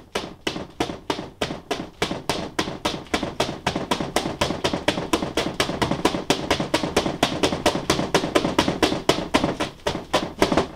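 Two floggers worked in a continuous Florentine figure-eight, their falls slapping the padded table top in a rapid, even run of several strikes a second.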